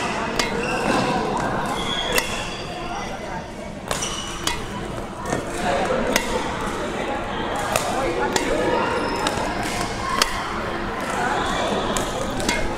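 Badminton rackets striking shuttlecocks in a multi-shuttle drill: short sharp hits every second or two, over background voices.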